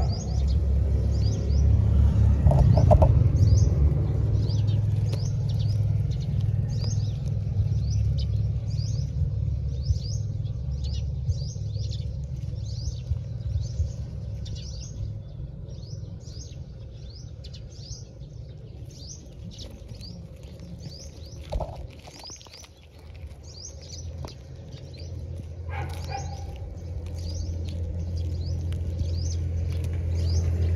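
Small birds chirping: short, high, downward chirps repeated every half second or so, over a steady low rumble.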